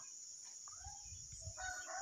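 A rooster crowing faintly in the second half, over a steady high-pitched drone of insects.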